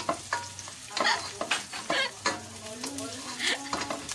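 Chopped aromatics sizzling as they sauté in oil in a pot, while a wooden spatula stirs them, scraping and knocking against the pot in quick irregular strokes.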